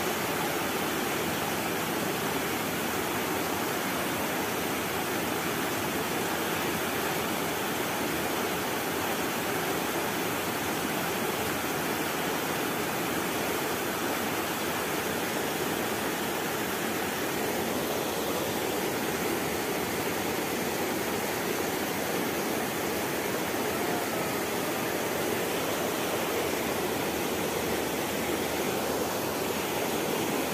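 Fast, muddy river water rushing over rocks, a steady, unchanging rush of water.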